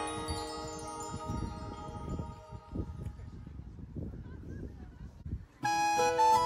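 Bell-like chime notes from the background music ringing out and slowly fading, over an uneven low rumble of wind on the microphone. A new, louder tune with a woodwind sound starts near the end.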